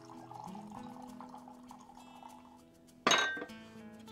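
Whisky trickling from a bottle's plastic pourer cap into a glass, then about three seconds in a sharp ringing knock as the glass bottle is set down on the table. Background music with steady tones runs underneath.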